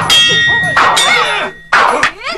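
Metal weapons clashing in a sword fight: three sharp clangs, each ringing on briefly.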